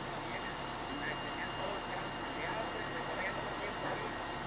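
Fire engine running steadily at the scene, with a thin steady high tone over it, and indistinct distant voices.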